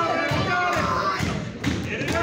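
A couple of thuds from wrestlers hitting the ring canvas in the second half, over crowd voices.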